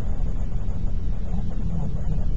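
Steady low rumble of a car driving, heard from inside the cabin: engine and tyre noise on the road.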